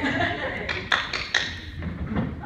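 A handful of sharp, irregular taps or knocks, about five within a second, over faint voices.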